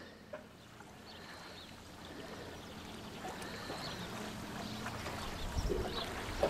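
Faint lake water lapping and trickling around a submerged net, growing slowly louder, with a low rumble near the end.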